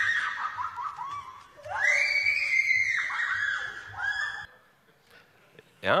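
A woman screaming while immersed in a VR headset, reacting as if she were really in the virtual scene: a long high scream that breaks into shorter falling cries, a second long scream about a second and a half later, then a last short cry, stopping about four and a half seconds in.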